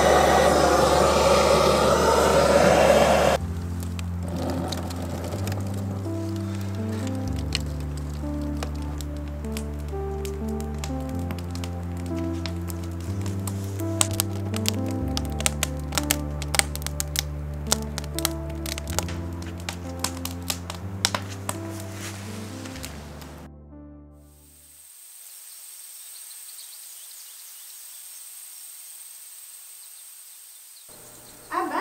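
Background music with slow, sustained bass chords over a wood fire crackling in a fire pit, with many sharp pops. A loud rushing noise fills the first three seconds. About 24 seconds in the music ends, leaving a faint steady hiss with a thin high tone.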